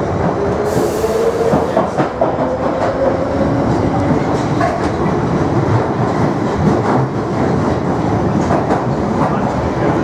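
Inside a London Underground 1973 Stock Piccadilly line train running through a tunnel: steady rumble and clatter of the wheels on the rails, with a motor whine rising in pitch over the first few seconds as the train picks up speed. A brief hiss sounds about a second in.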